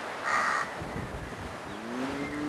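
A crow cawing once, briefly, about a quarter of a second in, over faint steady outdoor background noise.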